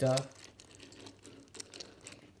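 Small plastic Thomas & Friends MINIS toy trains handled and pushed on a wooden tabletop: faint light clicks and rattles, with a few sharper clicks near the end.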